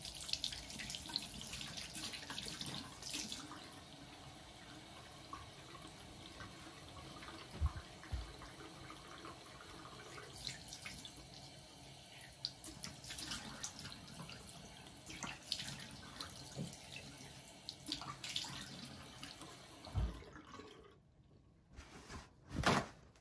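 Bathroom sink tap running, with irregular splashing as water is scooped up to wash the face, and a few dull knocks. The water stops just before the end.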